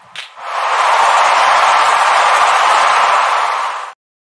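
Segment-intro sound effect: a steady rush of hiss-like noise that swells in over the first half second, holds, and cuts off suddenly near the end.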